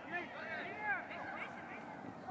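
Indistinct shouts and calls from players and spectators at a soccer game, short rising-and-falling voice calls over a steady outdoor background hiss.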